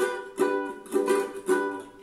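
Ukulele strummed on an A major chord: four strums about half a second apart, each ringing briefly, demonstrating a down, up, muted chop, down strumming pattern.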